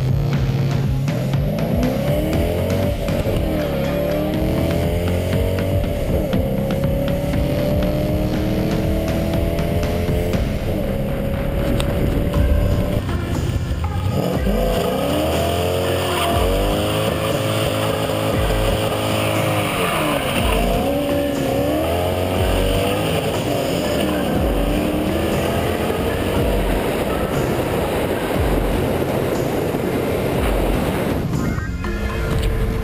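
Whipple-supercharged 4.6-litre V8 of a Roush Mustang under hard acceleration, its pitch climbing and dropping again and again, with a short let-up about halfway through.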